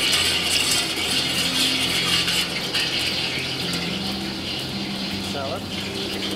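Steady roar and hiss of a commercial kitchen's gas burner heating a stockpot of oil, over a low hum.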